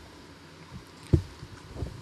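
A few short, low thumps picked up by a table microphone over a faint hiss, the loudest and sharpest about a second in.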